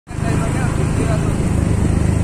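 A motor vehicle's engine running steadily, with voices over it.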